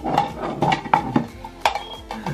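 A utensil clinking and tapping against a plate, a string of sharp irregular clinks with the loudest about three-quarters of the way through.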